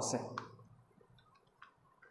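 Chalk tapping on a blackboard as a number is finished: one sharp click about half a second in, then a fainter click later, in a quiet room.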